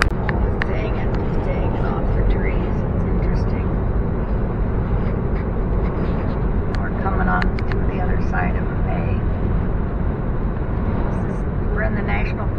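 Steady road noise inside a moving car's cabin: the low rumble of tyres and engine at highway speed, holding an even level throughout.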